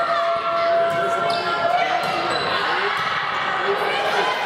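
Indoor volleyball play: sharp ball strikes and sneaker squeaks on the court, with players' and spectators' voices echoing in the gym.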